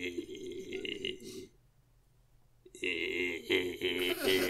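A man's drawn-out, guttural vocal noises: one ending about a second and a half in, then, after a short pause, another starting near the end.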